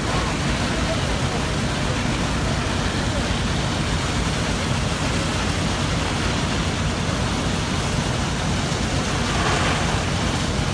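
Steady din of fire apparatus running at a building fire, with hose streams of water falling on the building. Voices murmur in the background.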